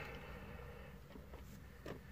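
Quiet room tone: a steady low hum with a few faint small ticks.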